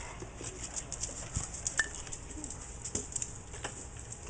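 Light footsteps with scattered soft clicks, fairly quiet.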